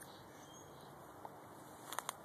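Faint outdoor background hiss with a soft click about a second in and a couple of small clicks near the end.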